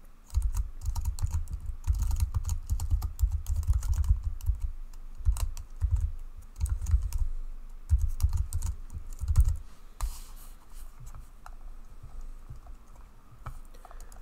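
Typing on a computer keyboard: quick runs of key clicks with dull low thuds for most of the time, thinning to a few scattered key presses over the last few seconds.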